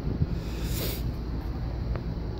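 Steady low mechanical hum of air-conditioning equipment running, with a brief hiss of wind on the microphone a little before a second in.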